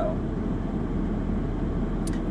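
A car's heater blower running steadily on high inside the cabin over the low hum of the idling engine, turned up to warm the car in the cold.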